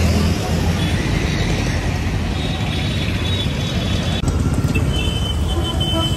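Steady road traffic noise of a busy city street, with a low rumble at the start. The sound shifts abruptly about four seconds in.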